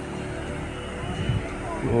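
Faint voices of people walking along a trail over a steady rushing background noise.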